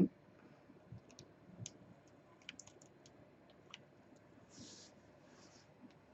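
Faint, scattered clicks of a hot glue gun being worked as lace ribbon is glued and pressed down onto calico, with a short soft rustle about four and a half seconds in.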